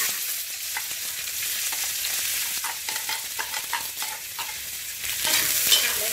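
Diced bell peppers, onion and carrot sizzling in hot oil in a wok, with a spatula scraping and clicking against the pan as they are stirred. The sizzle swells near the end.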